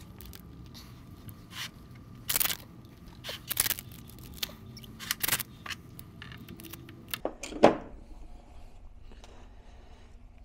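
Reinforced filament packing tape being pulled off its roll and wrapped around battery cells, in a series of short sticky rasps and rips at uneven intervals. The loudest comes about three-quarters of the way through.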